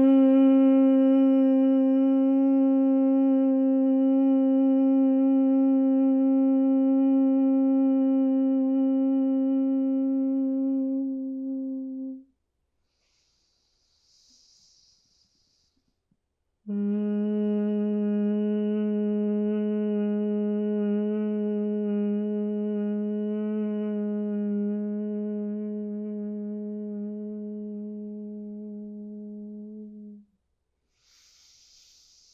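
A woman's closed-mouth humming in bhramari (humming bee) breath, held steady on each exhale. One long hum of about thirteen seconds, a soft nasal inhale, then a second, lower hum of about thirteen seconds that slowly fades.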